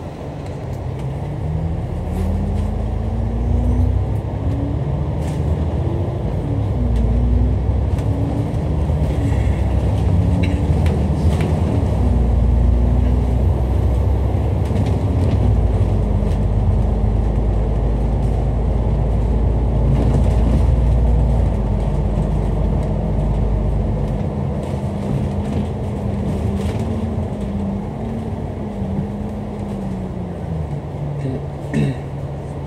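Dennis Enviro500 MMC double-decker bus's diesel engine heard from inside on the upper deck. It pulls away and accelerates, its pitch climbing and dropping back several times as the automatic gearbox shifts up. It then runs steadily at cruising speed and eases off near the end as the bus slows.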